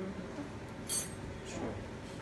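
A single light clink about a second in, from a kitchen knife being handled as it is passed over to cut the string on the meat, with a brief high ring; otherwise low room tone.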